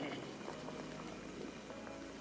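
Mountain bike tyres rolling over a trail covered in dry fallen leaves: a steady crackling rustle.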